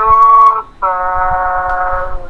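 A loud horn (baaja) blown in long, steady held notes over a video call. One note breaks off about two-thirds of a second in, and after a short gap another note is held on.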